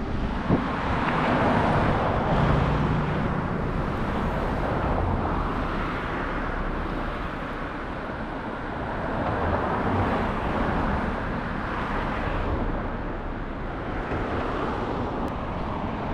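Busy road traffic: the steady noise of cars passing close by, swelling and fading as they go past.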